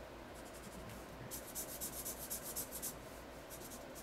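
Felt-tip marker rubbing on paper in quick, repeated back-and-forth strokes as letters are filled in, faint and scratchy, busiest from about a second in.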